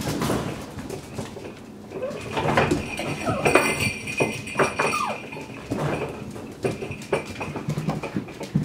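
Puppies whimpering and yipping, with short falling whines in the middle. Their claws click on the tile floor and the wire pen rattles.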